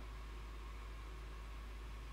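Faint steady background hiss with a constant low hum: the room and microphone's noise floor, with no typing or other events.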